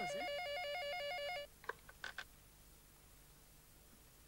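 Electronic telephone ringing: a two-tone warbling trill that lasts about a second and a half and then cuts off, followed by a few faint short noises.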